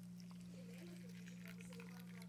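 Faint trickle of hot water poured from a pot onto ground coffee in a paper filter cone, over a steady low hum.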